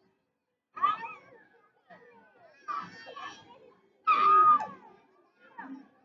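Young children's voices calling out and chattering in short separate bursts with brief gaps between. The loudest burst, about four seconds in, is a held high-pitched call.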